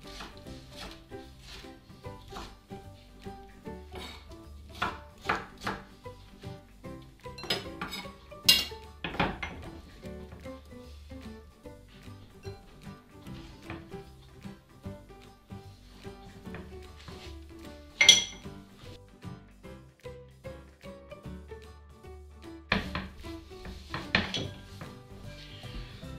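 Kitchen knife tapping and knocking on a wooden cutting board while peeled tomatoes are diced and gathered up, over background music. Most taps are light; a few sharper knocks stand out about a third of the way in and again about two thirds in.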